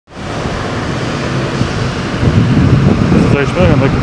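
Wind buffeting the microphone: a steady, fluttering low rumble. A voice begins speaking near the end.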